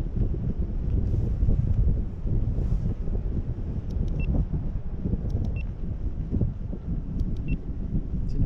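Wind buffeting the microphone of a camera on a parasail rig in flight: a steady, gusting low rumble, with a few faint ticks.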